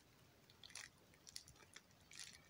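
Near silence, with a few faint short crinkles of plastic bubble wrap around a packet being handled.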